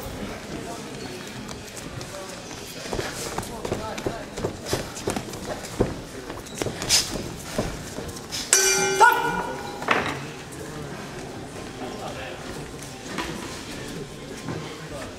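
A boxing ring bell sounds once about eight and a half seconds in, ringing for about a second and a half: the signal ending the round. Before it, scattered sharp knocks of gloves and footwork on the canvas.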